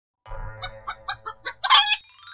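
A chicken clucking, about five short clucks, then a loud, longer squawk near the end.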